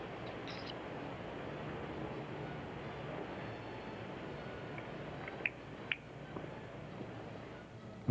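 Faint steady hiss with a low hum from an open microphone on a live satellite broadcast feed, broken by two brief faint clicks about five and a half and six seconds in.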